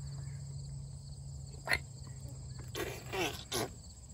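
Insects chirping steadily at a high pitch, with a short murmured voice sound about three seconds in.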